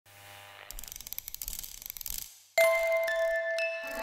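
Studio logo sting: a rapid flutter of ticks that fades out about two seconds in, then after a brief silence a sudden held chord of steady tones.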